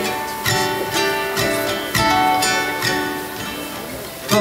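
Solo ukulele strumming chords, with no voice over it. Strong strokes land about half a second and two seconds in, and the last chord rings down near the end.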